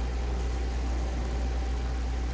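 Steady low hum with an even hiss over it and a faint, thin, high whine, unchanging throughout: the background noise of the room or recording.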